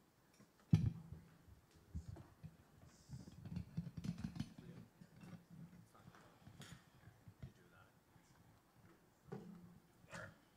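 Quiet stage handling noise between songs: a low thump about a second in, then soft knocks, bumps and rustling as an acoustic guitar and microphone stand are handled and moved.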